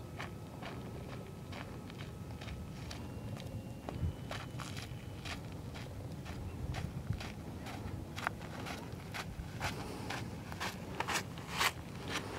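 A hiker's footsteps on a stony dirt trail, about two steps a second, getting steadily louder as she walks up and passes close by.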